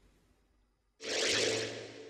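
A whoosh transition sound effect starting suddenly about a second in over a low steady hum, then fading away over about a second and a half.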